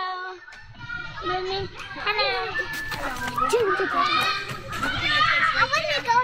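Children's voices at play: high-pitched shouts and chatter, starting about a second in after a brief lull.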